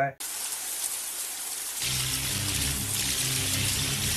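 Steady heavy rain on a film soundtrack, with a deep, low music score coming in about halfway through.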